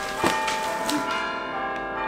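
Bell-like chimes ringing with many sustained tones, struck afresh about a quarter second in and again about a second in.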